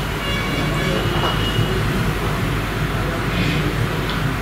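Steady low hum and hiss of background noise from a video-conference audio feed played in a hall, with a faint voice briefly about three and a half seconds in.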